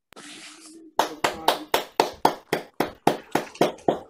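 One person clapping steadily, about four claps a second, starting about a second in.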